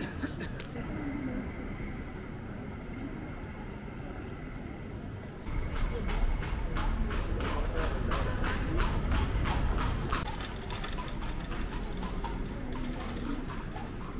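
A horse-drawn carriage passing over cobblestones from about five seconds in: the hooves clip-clop about four times a second over a low rumble of wheels, then fade after a few seconds.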